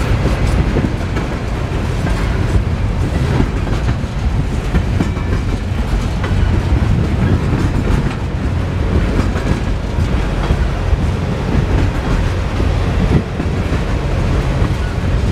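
Freight train of insulated juice boxcars rolling past close by: a loud, steady rumble with the clickety-clack of steel wheels over the rail joints.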